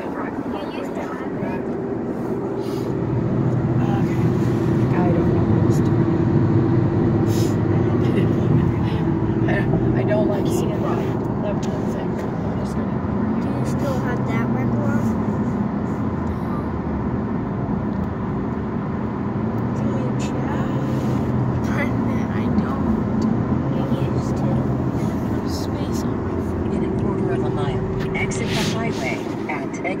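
Steady road and engine noise inside a moving car's cabin at highway speed, a low rumble that swells a little a few seconds in, with quiet voices now and then.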